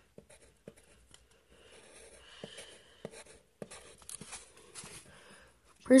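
Pencil drawing on a sheet of paper: faint, irregular scratching strokes with a few light taps of the lead.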